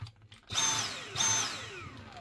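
Dyson V7 handheld vacuum's motor run in two short bursts, about two-thirds of a second apart. Each is a high whine that falls in pitch as the motor winds down. The vacuum now powers up on its new battery, confirming the failed battery was the fault.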